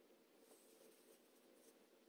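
Near silence: room tone with a few faint handling ticks.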